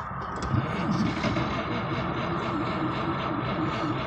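1938 Graham Sharknose's engine being cranked by the starter, turning over steadily without catching.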